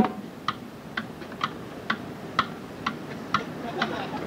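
Metronome clicking steadily at about two beats a second, with a few fainter ticks in between, heard over cassette tape hiss.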